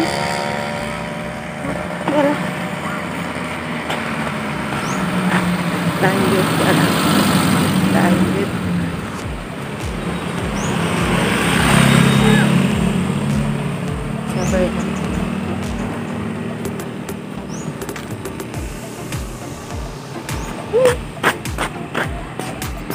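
Motor vehicles passing on a road, the loudest going by about halfway through.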